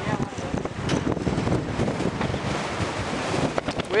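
Strong wind blowing across the camera's microphone, an even rushing noise, with a few faint clicks near the end.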